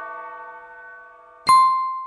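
The last held chord of a recorded Christmas song fading away, then a single bright bell ding about one and a half seconds in that rings briefly and dies out.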